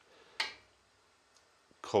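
A single short clink of a metal spoon against an enamel karahi with simmering gravy, about half a second in, then quiet until a man's voice returns near the end.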